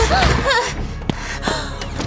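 Light background music, with two sharp clicks about a second in from a door's metal lever handle and latch as the door is opened.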